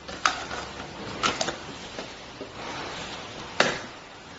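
A small gauge being handled and fitted into its plastic mounting pod on a tabletop: a few sharp clicks and knocks of plastic and metal, the loudest near the end.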